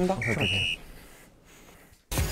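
A short two-tone electronic beep about half a second in: a brief lower note, then a slightly longer higher one. Faint room tone follows.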